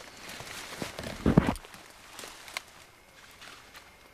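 Dry dead leaves and brush rustling and crackling as a person shifts and handles the debris of a brush pile, with a louder crunching scrape a little over a second in and a few small snaps after.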